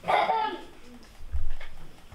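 A child's high-pitched, whimpering or yelping vocal cry of about half a second, followed about a second and a half in by a low thump on the stage.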